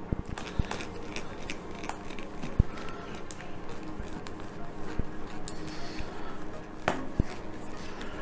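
A handful of sharp, scattered clicks and taps from a thin screwdriver and plastic model parts as the pieces of a 1/6 scale model car seat are pushed into their holes, over soft background music.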